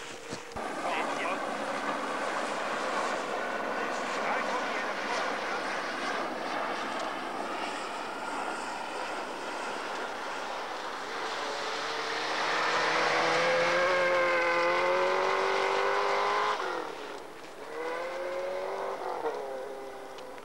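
Rally car engine running hard at high revs. Its pitch climbs to the loudest point a little past the middle, drops sharply, then climbs again near the end.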